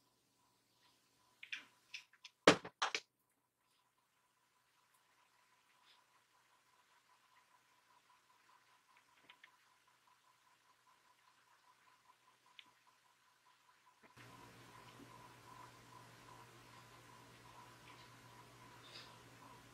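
Mostly quiet room tone, with a few sharp clicks and knocks between about one and a half and three seconds in from makeup products and tools being handled, followed by faint soft taps. A steady low hum comes in near the end.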